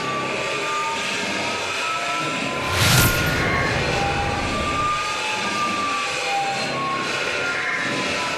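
Logo sting sound effect: a steady jet-like rushing noise with faint gliding tones, and a sudden loud hit about three seconds in as the logo lands.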